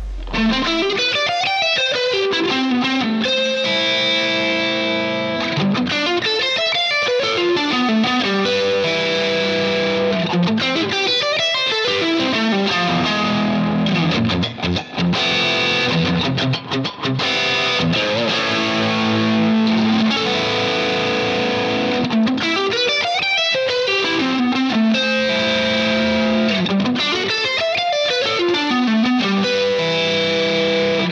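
Electric guitar playing a composed line of extended-chord arpeggios (triad, seventh, ninth, eleventh, thirteenth) in shifting meters of 7/8, 3/4 and 2/4, with hammer-ons and pull-offs. The notes climb and fall in runs that come back every few seconds, with held notes between them.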